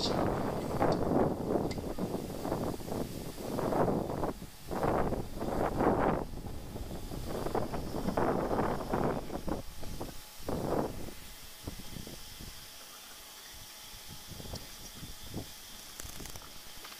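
Wind buffeting the microphone in irregular gusts for most of the first eleven seconds, then easing to a faint, steady outdoor hiss.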